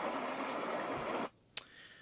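Small stream running over rocks: a steady rush of water that cuts off suddenly a little over a second in, followed by a single click.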